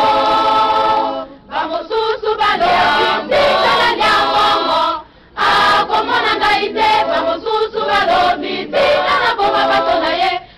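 A choir of voices singing a religious song in phrases, with short breaks about one and a half seconds and five seconds in.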